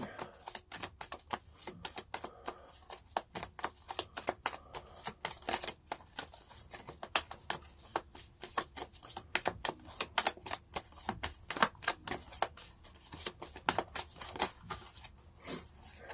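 A deck of spirit-animal oracle cards being shuffled by hand: a continuous run of quick, irregular card flicks and clicks, several a second.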